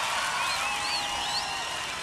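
Large concert crowd cheering after a song: applause with scattered whistles and shouts, slowly fading down.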